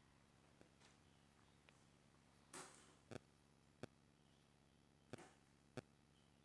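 Near silence with a few faint, sharp clicks and two brief soft breathy rustles, the quiet mouth noises of a person chewing soft food.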